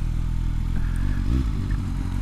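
Suzuki GSX-S750 (GSR750) inline-four motorcycle engine running at a steady low idle as the bike comes to a stop.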